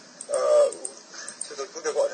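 A man's voice holding a short, drawn-out hesitation sound ('uh') about half a second in, followed by faint broken vocal sounds as he resumes speaking.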